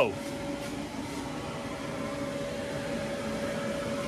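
Steady hum of an inflatable paint booth's blower fan, with a constant thin tone over it.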